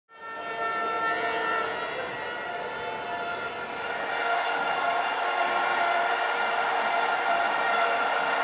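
Football stadium crowd blowing many horns, a dense chorus of long held notes at several pitches, with the noise of the crowd swelling about halfway through.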